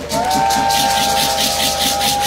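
A long, steady high-pitched whistle tone that slides up as it starts and then holds, over a fast rhythmic rattle like shakers.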